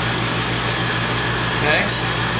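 Neon-bending crossfire burners, gas fed with forced air from a blower, running with a steady rushing noise and a low hum underneath.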